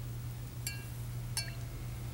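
A spoon tapping a drinking glass twice, about two-thirds of a second apart, each tap ringing briefly, as sugar is tipped into a glass of water. A low steady hum runs underneath.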